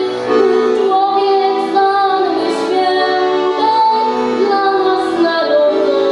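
A girl singing a Polish Christmas carol (kolęda) into a microphone, accompanied by a piano accordion playing held chords under the melody.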